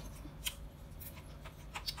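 A few faint, short clicks and taps of small handling noise, one about half a second in and a couple near the end, over a low steady room hum.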